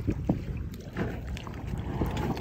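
A boat's engine running at low throttle with a steady low rumble as the boat is driven slowly up onto a submerged trailer, water stirring around the hull.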